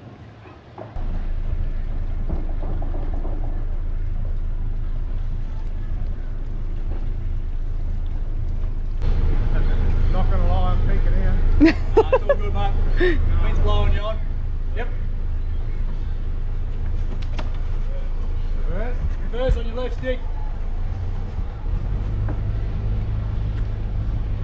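A catamaran's inboard diesel engine running at low revs while manoeuvring into a berth: a steady low hum that begins about a second in and grows louder for several seconds around the middle.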